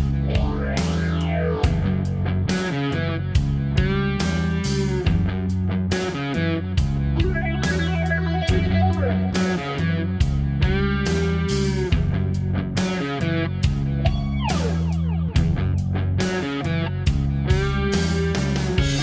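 Distorted electric guitar through a Dophix Nettuno fuzz pedal (2N5088 transistors), playing a rock riff over bass guitar and drums. Near the end the guitar makes a quick slide downward.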